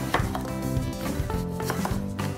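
Chef's knife slicing a half melon into wedges, with a few knocks of the blade on a wooden cutting board, over steady background music.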